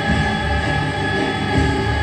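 A group of girls singing together in unison, holding one long steady note.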